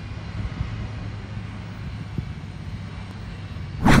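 Diesel engine of a wheel loader running with a steady low drone as it levels beach sand. A short loud whoosh comes near the end.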